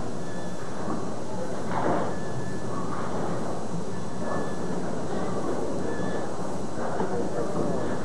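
Bowling-alley crowd chatter over a steady background rumble from the lanes, with no single pin crash standing out.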